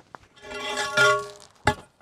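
A galvanized steel fence post handled and scraped, so the metal pipe rings in several steady tones that swell and fade. A sharp metallic clank follows near the end.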